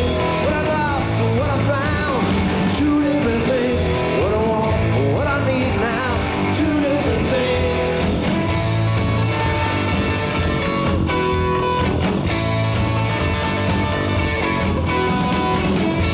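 Live rock band playing: a man singing over electric guitar, bass and drums for about the first half, then the electric guitar carries the lead over the rhythm section.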